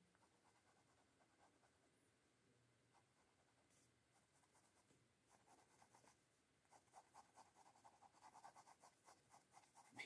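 Mostly near silence, then faint, quick scratching of a pen on paper in the second half: short repeated shading strokes, coming thicker near the end.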